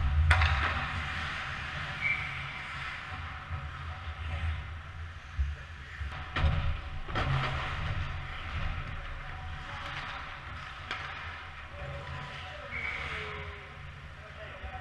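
Ice hockey play: skate blades scraping the ice, with sticks and puck clacking and a few sharp knocks against the boards, the loudest just after the start and about halfway through.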